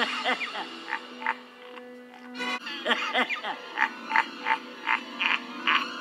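Emperor Palpatine's evil cackle: a man's laugh with gliding cries at first, then a quick run of short 'heh' bursts, about three a second, in the second half. A brief knock falls about halfway through.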